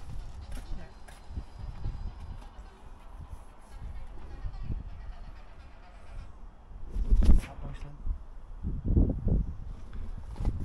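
Low, uneven rumble of wind buffeting an outdoor microphone, with a man's brief "yeah" near the end.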